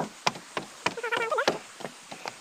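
Footsteps knocking on wooden stair treads as people walk down the steps, an irregular run of sharp knocks. A brief voice-like sound comes about a second in.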